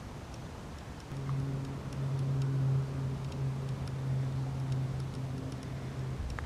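A low, steady hum that starts suddenly about a second in and stops at the end, over faint, scattered high ticks.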